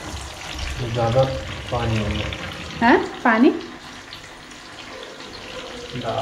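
Soya chaap pieces shallow-frying in hot oil in a small pan, a steady sizzle.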